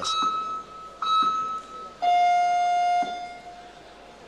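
Electronic ring signal in an amateur boxing arena: a short high beep, another about a second later, then a lower, louder buzz lasting about a second, the signal for the next round to start.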